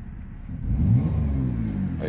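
2011 Chrysler Town & Country's 3.6-litre V6 being revved with the throttle. The engine note swells and climbs about half a second in, then eases back. The throttle is opened to make the oxygen-sensor readings swing.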